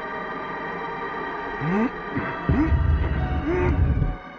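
Cartoon background music of sustained synthesizer chords. About halfway in, short swooping tones and a loud, low throbbing rumble join in as a sound effect, making the second half the loudest part.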